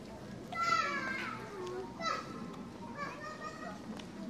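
A child's high-pitched voice calling out, a loud falling cry about half a second in and a shorter one about two seconds in, over the murmur of other voices in the street.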